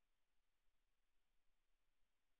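Near silence: a faint, even hiss.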